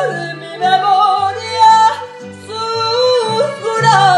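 A woman singing a Mexican ranchera in long held notes with wide vibrato, without words, over recorded accompaniment with a low line that steps from note to note.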